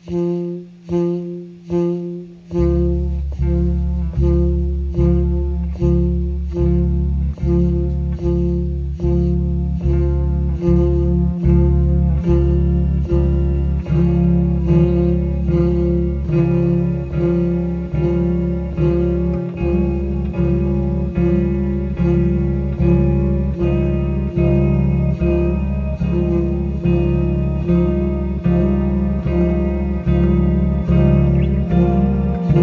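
Instrumental trio music on bass guitar, electric guitar and pedal-effected saxophone. A pulsing figure repeats about twice a second; a deep bass line comes in about two and a half seconds in, and more layers build up over it.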